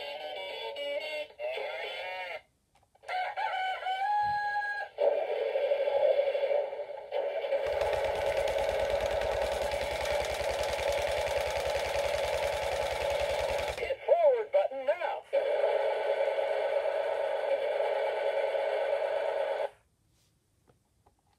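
A battery-powered toy tractor's sound chip playing a sequence of electronic music and sound effects, with a fast pulsing engine-like rumble in the middle stretch; it cuts off abruptly just before the end.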